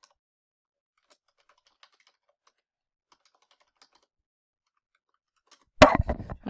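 Faint computer keyboard typing: scattered, irregular key clicks. Near the end there is a single loud thump.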